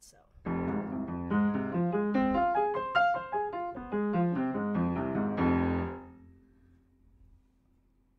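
Piano arpeggio in F minor played evenly up and back down in groups of four, with no shifted accents, ending on a held chord that fades out about six seconds in.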